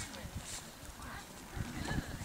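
Faint, distant voices of people talking over an uneven low rumble.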